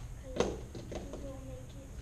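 A man speaking a few words in a large room, over a steady low hum.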